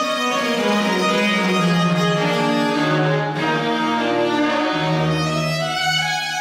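Baroque cello bowing a slow line of sustained notes in a chamber piece, moving down to a long, deep low note about three-quarters of the way through.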